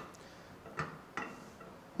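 A steel trailer ball pivoting in the socket of a latched Fulton A-frame coupler, metal on metal, giving a few faint clicks. With the wedge down, the ball is held captive but free to move.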